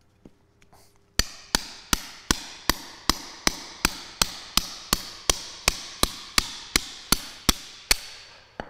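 Hammer beating on a steel chisel in a steady rhythm, about two and a half blows a second, each a sharp metallic strike with a short ring, starting about a second in. The chisel is being driven into a still-compressed brick of soaked sawdust and soybean-hull substrate that the soak has not broken up.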